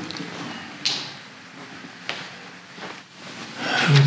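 Quiet room noise over a low steady hum, with a sharp knock about a second in and a lighter one about two seconds in.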